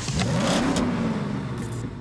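A car engine revving: its pitch climbs quickly over the first half-second, then holds and eases off slightly, with a short hissing sweep near the end.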